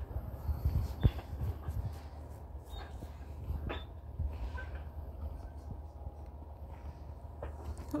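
Handheld phone microphone carried on foot across rough grass: a steady low rumble with scattered soft knocks and footfalls.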